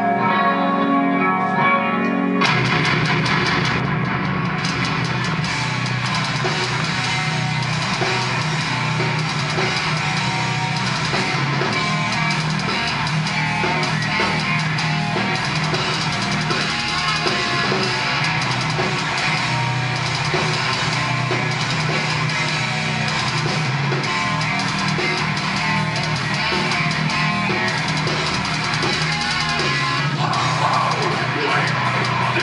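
Metal band playing live: a clean-toned guitar line, then about two and a half seconds in the full band comes in with heavily distorted guitars, bass and drums and plays on at full volume.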